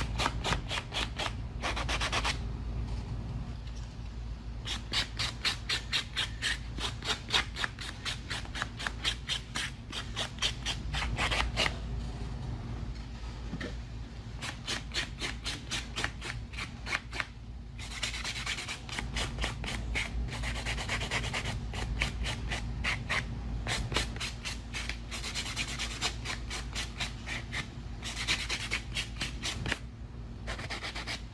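Orange buffer block rubbed quickly back and forth over a long coffin-shaped artificial nail, making rapid scratchy sanding strokes in runs broken by brief pauses.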